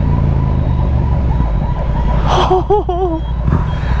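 Yamaha MT-07's 689 cc parallel-twin engine running with a steady low rumble as the bike slows in traffic.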